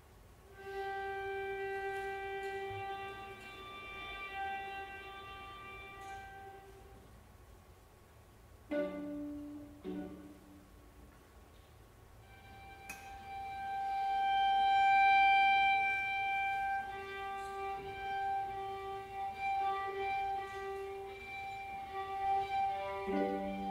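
Two violas playing slowly: a long held note that fades away, two short low notes about a second apart near the middle, then a high sustained note that swells to its loudest and is later joined by a lower held note.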